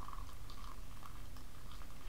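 Hot water poured in a thin stream from an electric kettle into a ceramic mug of hot chocolate powder: a faint, steady trickle.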